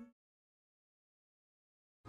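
Near silence: a blank gap between two songs, with the last of the previous song cutting off at the very start.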